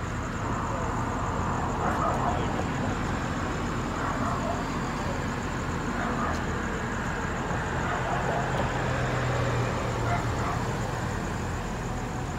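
Steady street traffic noise: idling vehicles with a constant low hum and cars driving past, with faint distant voices.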